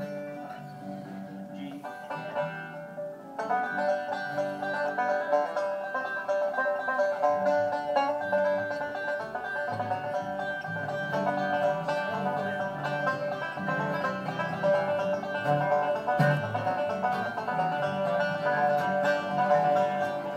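Live acoustic bluegrass string band with guitars playing the instrumental introduction to a song. It is quiet and thin at first, then fuller and louder from about three and a half seconds in.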